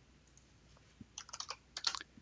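Faint computer keyboard keystrokes: about a second in, a quick run of light key taps.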